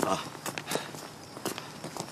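A few scattered footsteps on a paved path, irregular and separate rather than a steady stride.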